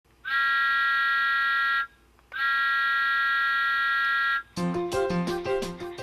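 Two long steam-whistle blasts, each about a second and a half, with a slight rise in pitch as each one starts. Background music begins about four and a half seconds in.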